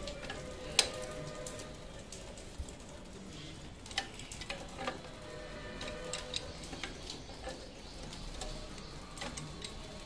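Scattered sharp clinks and knocks of a steel pipe wrench and fitting on a threaded galvanized iron pipe elbow as it is worked loose, irregular, the loudest about a second in and a cluster a few seconds later.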